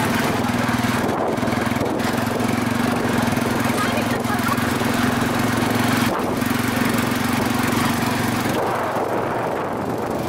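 Motorcycle tricycle's small engine running steadily under way, with air rushing past. The engine note breaks briefly about six seconds in and drops away near the end.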